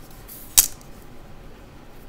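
A wooden ruler set down on a desk and paper with a single sharp knock about half a second in, after a brief rustle of it being slid into place.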